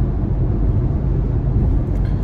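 Steady low road and engine noise heard inside the cabin of a car moving at highway speed.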